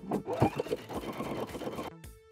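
Domestic sewing machine running, stitching down a fabric casing along a shirt hem, with a quick, even needle clatter.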